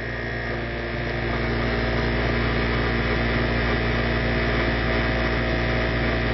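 Induction motor driving an alternator, running with a steady hum made of many steady tones, as the alternator's load is switched on.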